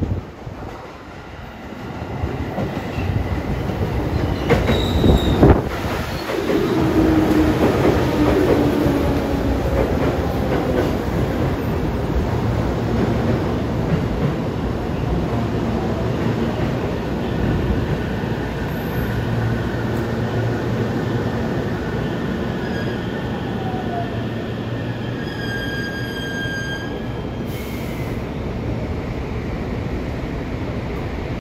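Electric commuter train, a JR 211 series coupled to a 313 series, running into the platform and braking to a halt. The wheels clatter over rail joints as the cars pass, the running noise holds steady as it slows, and a high brake squeal sounds near the end as it stops.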